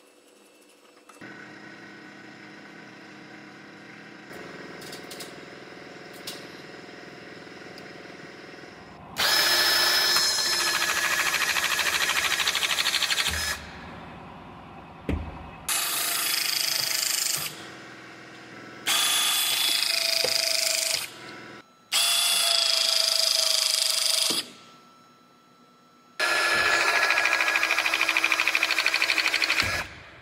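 An air-powered rivet tool setting rivets in an aluminum pickup roof panel. It runs loudly in five bursts of two to four seconds each, with a steady whine, over the second two-thirds. Before that, for the first eight seconds or so, there is a quieter steady mechanical sound.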